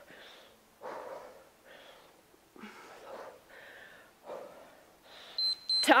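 A woman's effortful breathing during a dumbbell exercise: several short, breathy exhales about a second apart. Near the end, two short high beeps from an interval timer mark the end of the work period.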